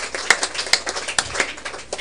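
A group of people clapping their hands together in a steady rhythm, a little over two claps a second, the claps growing weaker in the second half.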